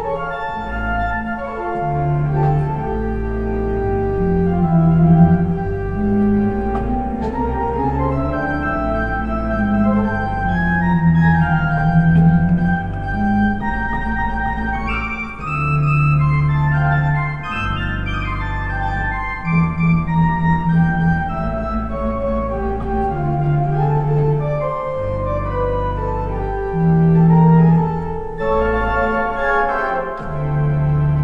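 Pipe organ playing a jazz improvisation over a I–vi–ii–V turnaround in C. A melodic line in the hands moves over chords, with a bass note that changes every second or two.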